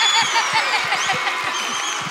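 Studio audience laughing and clapping, with a woman's high, rapidly repeated laugh standing out in the first second.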